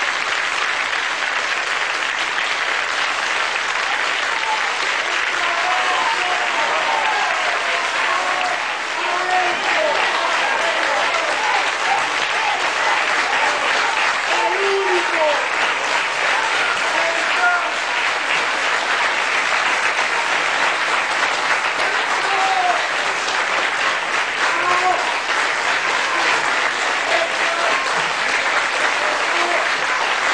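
Studio audience applauding steadily, with scattered voices calling out over the clapping.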